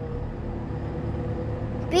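Skid steer engine running steadily while driving a hydraulic Rockhound power rake attachment, a low drone with a faint steady whine on top.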